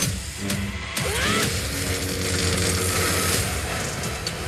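Film trailer soundtrack: music over a heavy low rumble of action sound effects, with a curving sweep in pitch about a second in and held tones after it.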